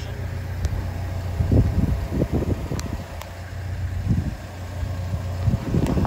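Caterpillar 320 excavator's diesel engine idling steadily, with wind buffeting the microphone in gusts.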